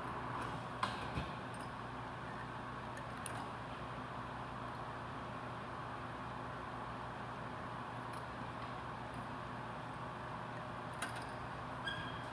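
Quiet room tone with a steady low hum and a few faint, short clicks of a hand pipette being worked at a test-tube rack, a couple near the start and a couple near the end.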